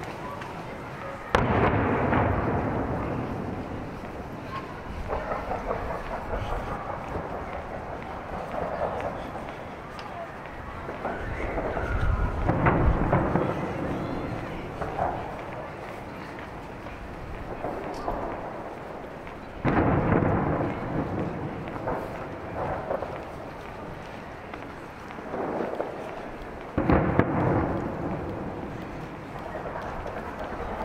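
Fireworks booming in the distance: three sharp bursts, a little over a second in, about twenty seconds in and near the end, each followed by a long rolling rumble that fades slowly. A lower rumble swells and dies away in between.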